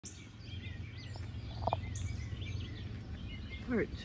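Several songbirds chirping over a steady low background rumble.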